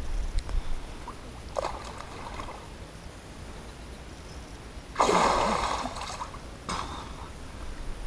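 A person ducking under chest-deep water with a brief splash about one and a half seconds in, then bursting up out of it with a loud splash lasting about a second, about five seconds in.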